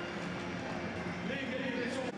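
Footballers shouting and calling out to each other as they celebrate a goal in an empty stadium, with one held shout near the end, over a steady background hiss.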